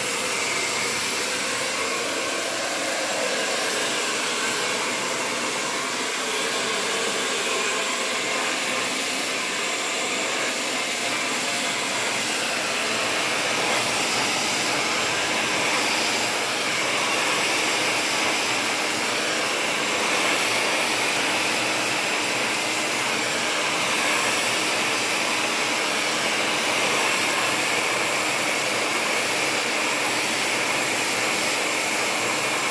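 Handheld hair dryer running steadily, its air rushing as hair is blow-dried over a round brush, a little louder in the second half.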